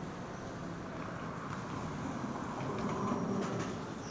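Steady city background noise of passing traffic, an ambience bed under the lesson, growing a little louder about three seconds in before easing back.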